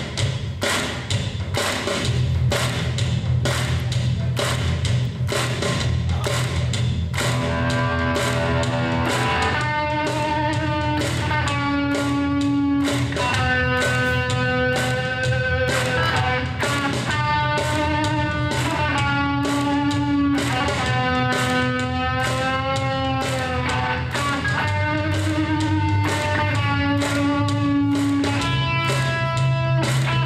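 Electric guitar playing an instrumental break over a steady drum beat and bass: a rhythmic chugging figure at first, then from about seven seconds in a lead line of held notes with bends and vibrato.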